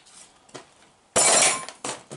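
A sudden crash and clatter of hard material about a second in, lasting about half a second, with a few light clicks before and after it.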